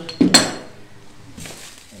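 A small steel bar clamp set down on the floor with a sharp metallic clink and a brief ring, followed by faint rustling.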